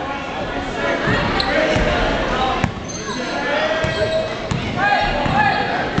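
Basketball game in a gym: a ball bouncing on the hardwood court in a few sharp knocks, under shouts from players and spectators echoing in the hall.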